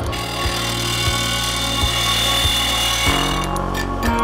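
Lagun vertical milling machine cutting metal: a steady machining noise with a high whine, dying away about three and a half seconds in.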